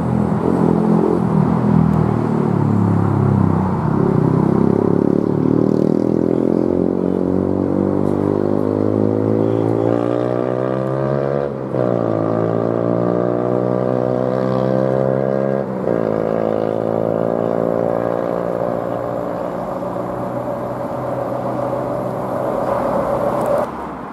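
An engine accelerating hard: its note climbs steadily, drops sharply about halfway through and again about two-thirds of the way through as it changes up, and climbs again after each change.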